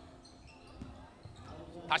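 Faint thuds of a basketball being dribbled on a wooden gym floor during play.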